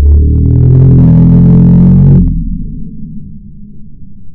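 A man's startled shout slowed down to slow-motion speed, turned into one deep, drawn-out groan lasting about two seconds that then fades into a low rumble.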